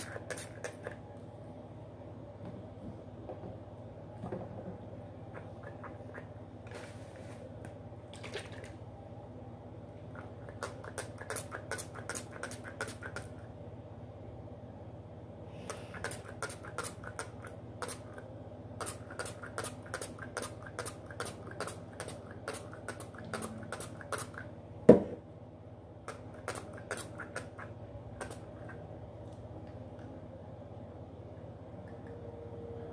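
Trigger spray bottle spritzing water in quick runs of about three squirts a second, with pauses between the runs. One sharp knock about five seconds before the end.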